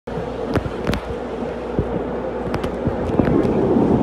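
Steady hum and rumble inside a tram car, with several sharp clicks and knocks, the rumble growing louder near the end.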